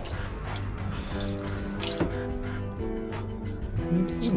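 Background music with sustained chords, over light water splashing as a small cloth dressing gown is stirred in a basin of dye water.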